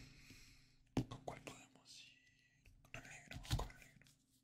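Faint close-up ASMR handling sounds of a marker in the hand: a few sharp clicks and taps about a second in, then louder knocks and rustles near the end, with soft breathy whispering.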